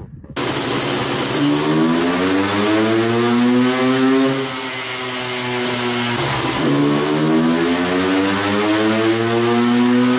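Honda CR500 single-cylinder two-stroke engine run wide open on a chassis dyno, its pitch climbing steadily through the pull, dipping briefly about six and a half seconds in, then climbing again. The run makes 51.78 hp with the air-fuel mixture dialed in, the mark of a very healthy stock engine.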